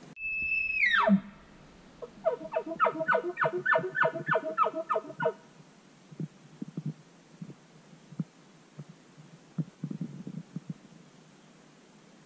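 An elk bugle: a high held whistle that drops steeply into a low grunt, followed by a run of about a dozen evenly spaced chuckles, roughly three a second. Faint footsteps on the forest floor come after it.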